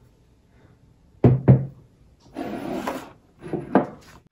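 A glass liqueur bottle and ceramic cups being set down on a wooden table: two sharp knocks a little after a second in, some handling noise, then two more knocks near the end.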